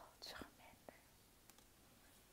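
A woman's soft, whispered exclamation in the first half second, then near silence with a couple of faint ticks.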